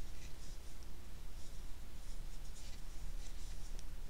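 A crochet hook working cotton yarn: soft, irregular scratching and rustling as the hook is pushed through and pulled back, over a low steady hum.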